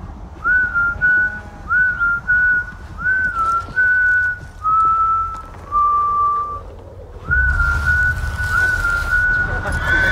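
A person whistling a slow tune in short phrases, each note sliding up into a held pitch, over a low rumble. About seven seconds in the rumble grows louder and a hiss comes in for a couple of seconds.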